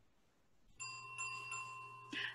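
Bright chime sound effect: three quick chiming notes, starting about a second in and ringing on.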